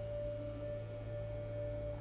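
Soft ambient meditation background music: one steady held pure tone over a low, even drone.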